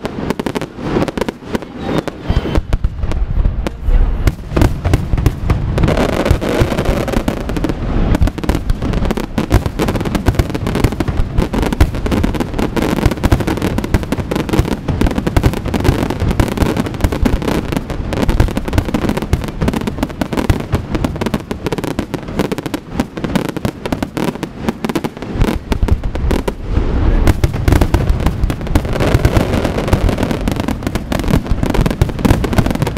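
Aerial firework shells bursting in a dense, unbroken barrage of bangs and crackling stars. It is a little thinner for the first few seconds, then heavier, with deeper booms near the end.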